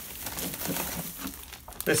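Clear plastic zip-top bag crinkling as it is picked up and handled, with a few sharper crackles near the end.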